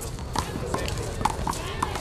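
About five short, sharp taps on a concrete handball court, spaced irregularly, over background voices.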